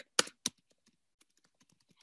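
Typing on a computer keyboard: two louder key strikes about a quarter and half a second in, then a run of light, quick keystrokes.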